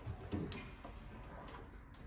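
A soft knock about a third of a second in, then a few faint light ticks: tools being handled at a tool chest.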